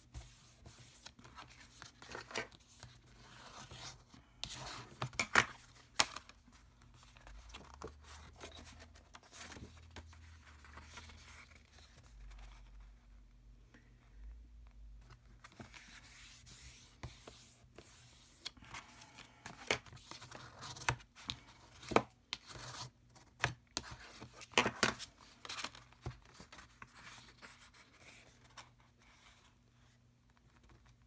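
Sheets of white cardstock and patterned paper being handled and slid over a craft mat: irregular rustling and crackling of paper, with a few sharper snaps about five seconds in and again in the second half.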